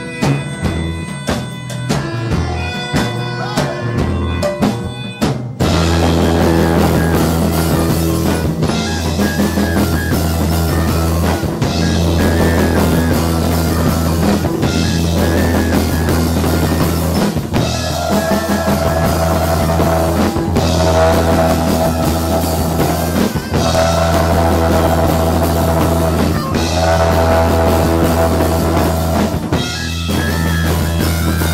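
A live band playing rock-leaning music with melodica, soprano saxophone, guitars and keyboard. About five seconds in it jumps suddenly to a louder full-band passage with drums and heavy bass.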